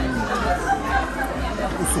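Background chatter of voices in a restaurant dining room.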